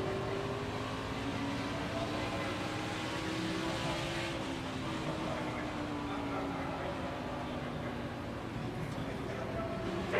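NASCAR stock car's V8 engine heard from the in-car camera at racing speed, its pitch rising and falling slowly through the laps.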